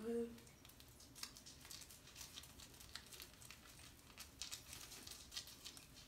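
Bristles of a handheld facial cleansing brush scrubbing cleanser-covered skin: faint, quick, irregular scratchy strokes that run from about half a second in until just before the end.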